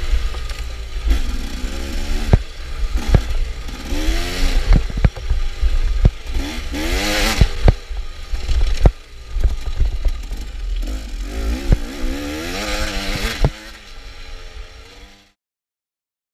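KTM dirt bike engine revving up and down as the rider works the throttle and gears, heard close up from a bike-mounted camera, with sharp knocks and clatter from the bike over rough ground. The sound drops away near the end and then cuts off.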